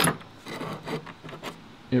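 Faint rubbing and scraping of thin laser-cut steel lock plates being shifted by hand on a wooden workbench.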